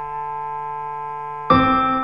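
Piano music from a theatre score: a chord rings on, then a new chord is struck about one and a half seconds in and fades slowly.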